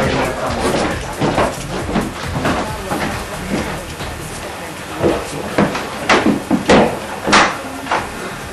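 Knocking on a wooden door: about five sharp, uneven raps in the second half.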